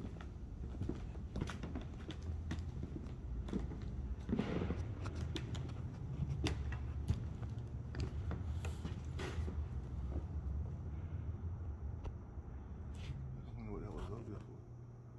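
Footsteps and creaks on an old floor, many short irregular knocks and clicks over a steady low rumble, busiest about four to five seconds in.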